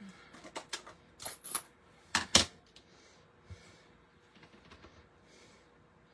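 Sharp plastic clicks and taps from handling a clear stamp on an acrylic block and a plastic ink pad case. A few small clicks come first, then two loud pairs, one a little over a second in and one about two seconds in, followed by faint rustling.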